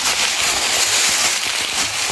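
Dense, steady crackling and rustling of dry leaf litter and loose soil as a hoe digs into a dry earth bank.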